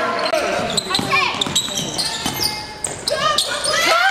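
Live sound of a basketball game in a gym: sneakers squeaking on the hardwood in short, sharp chirps, the ball thudding as it is dribbled, and players and coaches calling out.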